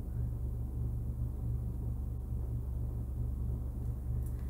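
A steady low hum with nothing else over it: background room noise.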